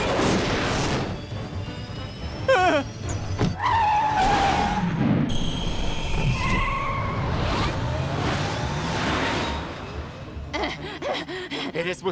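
Cartoon action music mixed with sound effects of a flying space taxi: engine whooshes, sweeping tones and sharp impacts, with a brief cry about two and a half seconds in.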